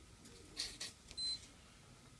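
Two brief scratchy handling sounds, then one short, high-pitched electronic beep from the digital soldering station a little over a second in.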